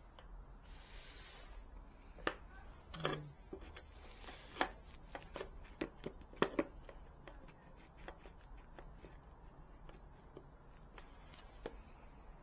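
Quiet handling noises: a scattered handful of light taps and knocks as a pencil and a round wooden disc are handled on a wooden workbench, with a brief rustle near the start and the sharpest knocks about three seconds in and again after six seconds.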